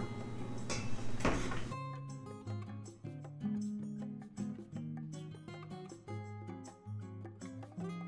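Background music: a light melody of plucked string notes. Before it starts, about a second and a half in, there are a couple of brief knocks over room noise.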